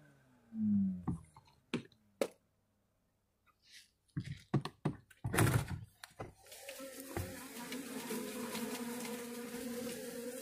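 A bee-removal vacuum winding down after being switched off, its hum falling in pitch in the first second. A run of knocks and thunks follows as the plastic bee box lid is opened, and from about six and a half seconds in there is a steady buzz of live honeybees in the box.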